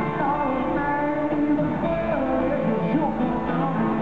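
Live country-rock band music played through an arena sound system, guitars to the fore, continuous and full.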